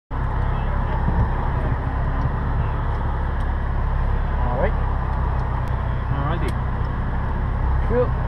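Nissan 350Z's 3.5-litre V6 running at a steady low speed, heard from inside the cabin as a constant low rumble, with a faint voice now and then.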